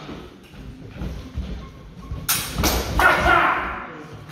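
Historical sabre bout exchange: fencers' feet thudding on a wooden floor, then about two seconds in a quick flurry of three sharp sabre strikes, followed by a louder half-second burst of sound as the exchange ends in a double hit.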